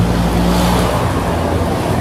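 A road vehicle: a steady low engine hum with road noise, the noise strongest around the middle.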